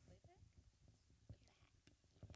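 Near silence: room tone with a brief faint, distant voice near the start and a couple of soft clicks.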